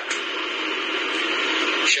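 Steady static hiss, even and narrow-banded like a radio or phone line, with no voice in it, cut off abruptly near the end as speech returns.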